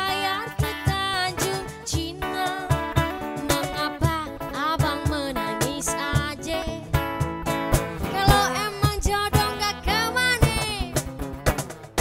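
Live acoustic band: a strummed acoustic guitar and cajón beats, with a woman singing a wavering melodic line.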